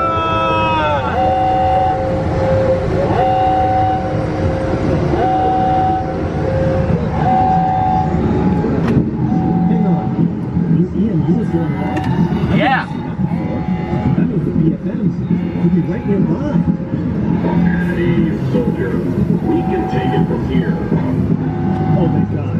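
Electronic alarm sound effect from loudspeakers: after a falling power-down tone, a short beep repeats about every one and a half to two seconds over a low rumble and indistinct voices. A brief high rising-and-falling sound cuts in about midway.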